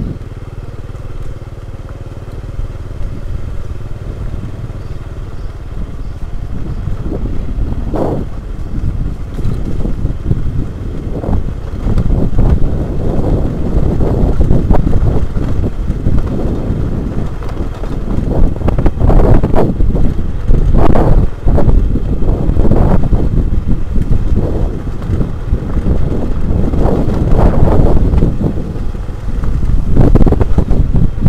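Small motorcycle's engine running as it rides a rough dirt track, with knocks and rattles from the bike jolting over bumps and ruts. The ride gets louder and rougher about twelve seconds in.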